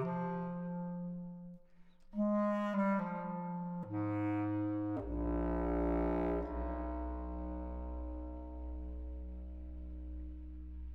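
Bass clarinet playing a phrase of held notes, broken by a short pause about a second and a half in. About five seconds in, a deep sustained chord comes in and holds under it.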